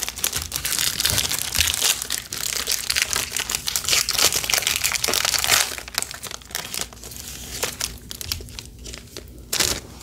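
Foil trading-card pack wrapper crinkling as it is torn open and handled, busy for about the first six seconds, then fading to small rustles and clicks as the cards are handled, with a short louder rustle near the end.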